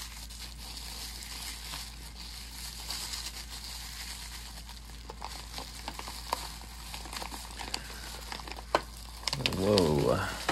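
Tissue paper crinkling and rustling as hands unwrap items packed in it, with a few small clicks of hard objects being handled. A short voice sound comes right at the end.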